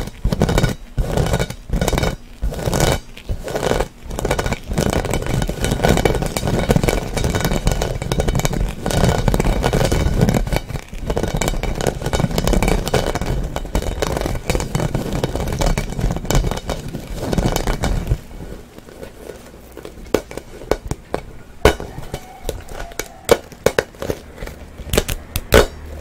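Fingers rubbing and scratching a rubber play ball wrapped in plastic mesh netting close to the microphone: a dense scraping noise with a deep rub for about two-thirds of the time, then quieter, scattered taps and plucks at the netting.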